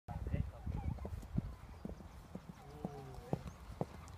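A pony's hooves cantering on a sand arena: a run of dull thuds, about two a second. Faint voices in the background.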